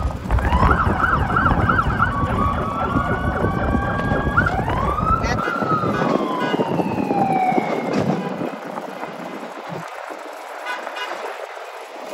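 Emergency vehicle siren sounding, changing from a fast yelp to a slow wail that rises about five seconds in and then falls away, over a low rumble that stops midway.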